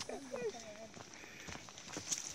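Faint voices of several people talking at a distance, with a few footsteps on a dirt trail.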